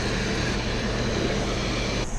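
Steady rush of water released from a dam, with a low steady hum underneath.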